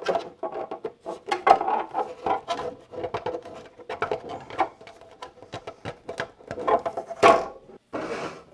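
Hollow 3D-printed PLA plastic shroud segments knocking, scraping and clattering against each other and a wooden workbench as they are pushed together, in a quick irregular run of clicks and knocks, with a louder clatter about seven seconds in.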